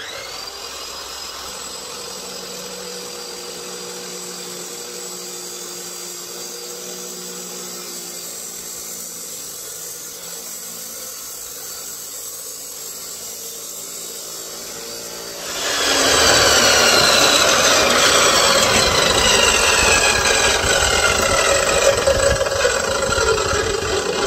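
Ingco 355 mm cut-off saw switched on, its motor spinning up and running freely with a steady whine. About two-thirds of the way in, the Butterfly abrasive disc bites into a steel pipe: the sound turns to loud grinding, and the whine sinks in pitch as the motor takes the load.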